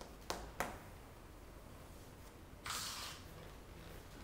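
Chalk on a chalkboard: two sharp taps in the first second, then a short scratchy stroke about three seconds in as a line is drawn.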